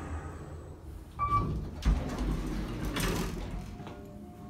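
Kone traction elevator arriving at a floor: a short single-tone beep about a second in, then the car doors sliding open with a low thump, followed by shuffling as the rider steps out.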